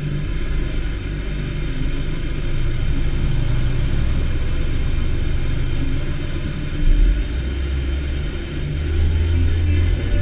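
A steady low rumble under an even hiss, swelling briefly about seven seconds in.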